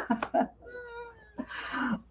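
A woman laughing: a few short bursts, then a thin, high held vocal note and a breathy laugh near the end.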